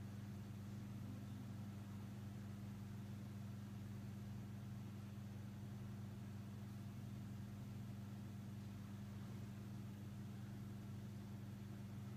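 Quiet room tone: a steady low hum with a faint hiss, unchanging throughout.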